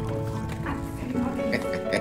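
Orchestral ride soundtrack music with long held notes, and a few quick light knocks in the second half.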